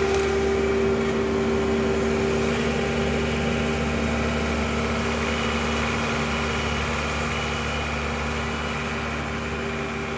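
John Deere 4052 compact tractor's diesel engine running steadily as the loader grapple lifts a stump and the tractor drives off, the sound growing slowly fainter as it moves away.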